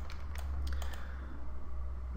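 A few clicks of a computer keyboard and mouse in the first second, over a steady low electrical hum.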